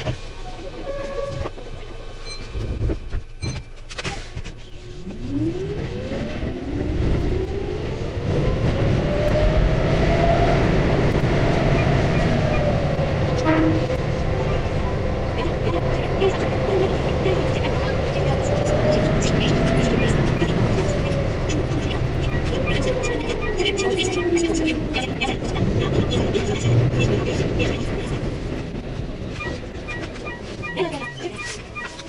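Keihan 8000-series electric train running underground: its motor whine rises in pitch as it pulls away, holds steady while it runs, then falls as it brakes into the next station, over continuous rumbling running noise.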